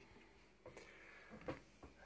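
Faint handling sounds of a cardboard box lid being lifted open: a few soft knocks and rubs, the clearest about one and a half seconds in, against near silence.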